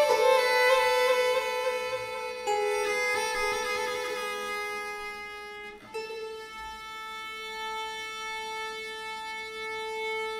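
Baroque chamber music for violin, viola da gamba and double harp, playing slowly in long held notes. The notes change about two and a half seconds in, and the music grows quieter. A new note about six seconds in is held, swelling gently.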